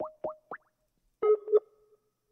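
Short electronic bloop sound effects: three quick rising chirps, then two brief tones a little over a second in.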